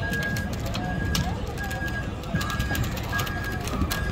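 Electronic beeper sounding a steady high beep about every three-quarters of a second, each beep about half a second long, over the voices of a crowd.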